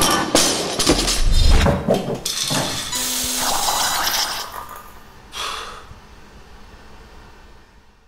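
Intro sound effects: a quick run of sudden crashes and impacts, with a deep rumble about a second and a half in, then a noisy swell that fades away over the last few seconds.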